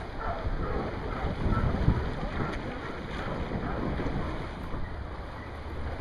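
Wind buffeting the microphone, a steady low rumble, over the wash of the sea.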